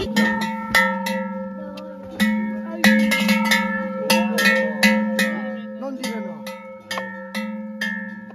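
Large cowbell clanging irregularly, a dozen or so uneven strikes, as it is hung on a cow's neck. Each strike leaves a long ringing tone that carries into the next.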